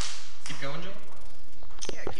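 A sharp click, then a brief spoken word from a man's voice, then a few more small clicks, over a steady background hiss.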